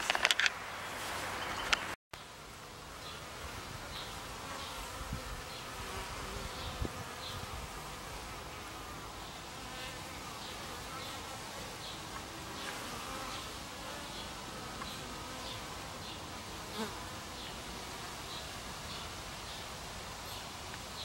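Honeybees buzzing at a hive entrance, a steady hum of many bees flying in and out. In the first two seconds there are knocks and rustling from handling the camera, and a faint regular high ticking runs under the hum.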